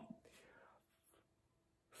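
Near silence: a pause in a man's speech, with only faint room tone.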